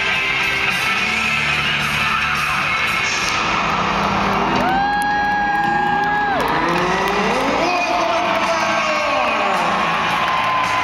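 Arena team-introduction music played loud over the PA, over a cheering crowd. About halfway through, a long high note is held for over a second, followed by a note that rises and then falls.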